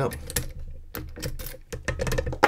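Key turning in the Adapta J40 Euro cylinder of a Federal 406HE padlock to lock it, then being drawn out of the keyway: a handful of small, sharp metallic clicks.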